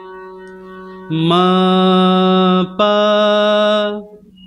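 Harmonium playing two sustained notes of a slow sargam exercise, Ga then a step up to Ma, starting about a second in with a short break between them. A quieter steady drone runs underneath.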